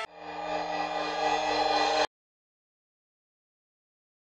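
A sustained electronic musical tone, several steady pitches over a hiss, swelling in loudness and then cutting off abruptly about two seconds in, leaving dead silence.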